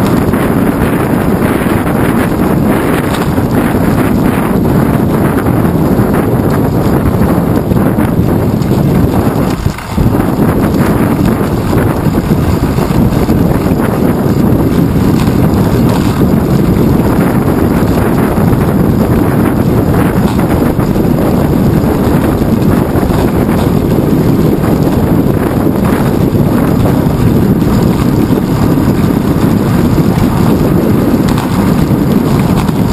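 Steady, loud wind buffeting a handlebar-mounted action camera's microphone as the bicycle rides along, with a rumble of riding noise underneath. The noise dips briefly about ten seconds in.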